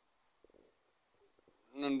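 Near silence, room tone with a few faint soft knocks, then a man's voice starts speaking loudly near the end.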